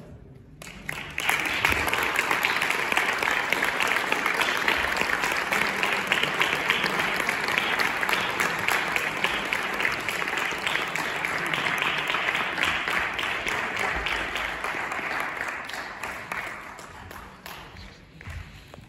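Audience applauding, starting about a second in, holding steady, and fading out over the last few seconds.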